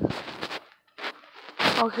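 Brief rustling noise, a short near-silent pause, then a boy's voice saying "Okay."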